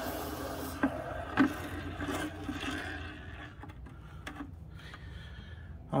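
Hot freshly cast Nordic gold (copper alloy) bar quenching in a bucket of water: a sizzling hiss that fades away over the first two or three seconds, with two light knocks a little after it starts.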